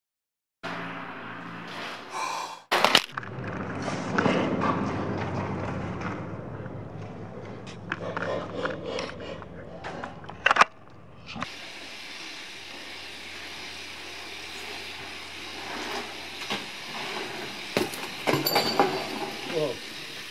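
BMX bikes rolling and clattering on concrete, with sharp knocks and indistinct voices.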